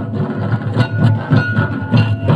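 Santali folk dance music with steady, loud drumming.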